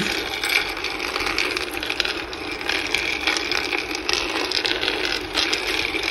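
Cocoa beans rattling and clicking as the stirring paddle of a cocoa-bean roaster pushes them around its pan, a steady dense patter of small knocks, rolling like pebbles on a beach.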